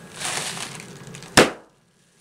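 A short rush of breath blown into a plastic bag, then one loud pop about a second and a half in as the inflated bag is burst between the hands.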